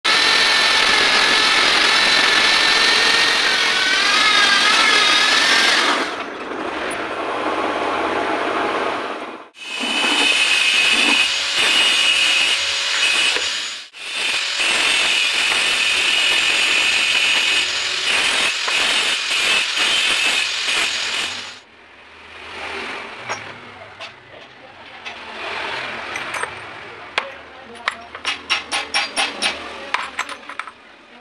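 A pink abrasive wheel on a tool-post grinder grinds a hardened steel tap that turns in the lathe chuck. It makes a loud, steady grinding noise with a wavering whine, broken off sharply several times. After about twenty-two seconds it gives way to quieter sounds, with a run of light metallic clicks near the end.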